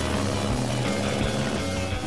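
Helicopter hovering, its rotor and engine running steadily, with music laid over it.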